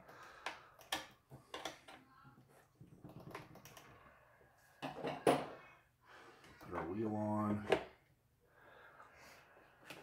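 Small clicks and taps of little metal parts being handled at a workbench, as a wheel collar is fitted and its set screw worked with a small hand driver. A man's voice is heard briefly, about seven seconds in.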